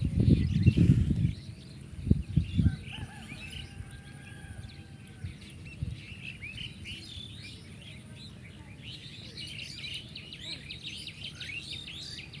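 Small birds chirping and calling, growing busier near the end. In the first second or so there are loud low thumps and rumbling, with two more thumps about two seconds in.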